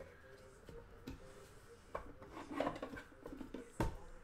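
Faint handling noise as hands reach into a wooden crate and take out hard plastic graded card slabs: scattered light clicks and knocks, with one sharper clack near the end.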